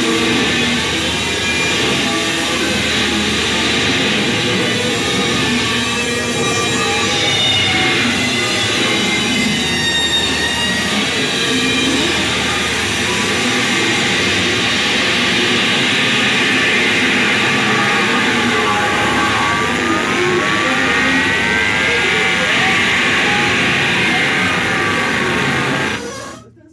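Live noise improvisation: distorted electric guitar through an amplifier with laptop electronics, making a dense, steady wall of noise. Gliding tones swoop up and down near the end before the sound cuts off abruptly.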